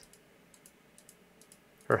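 Faint, scattered clicking of computer keys during editing work at a computer, a few light clicks spread over the quiet stretch.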